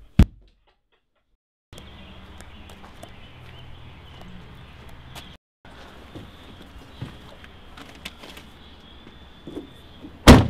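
A single loud, sharp thud a fraction of a second in. Then, over a steady background hum, scattered bumps and knocks as a limp body is pushed and folded into a car's trunk.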